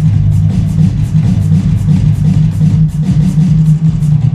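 Drum kit played with sticks: quick strokes on cymbals and drums over a steady, shifting bass line from music playing along.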